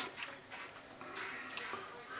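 Merkur slant safety razor scraping faintly over lathered stubble in a few short strokes, with a sharp click about half a second in.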